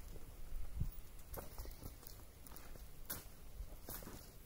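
Faint footsteps and movement of a person stepping away from a table, with a few light knocks and one sharper click about three seconds in, over a quiet outdoor background.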